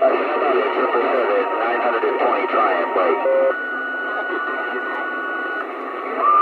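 CB radio receiving distant stations: overlapping, garbled voices through a thin, narrow-sounding speaker. From about three seconds in, a steady whistle holds over quieter noise until shortly before the end.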